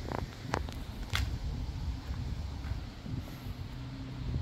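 Outdoor wind rumbling on the microphone of a handheld phone camera, with a few short sharp clicks in the first second or so.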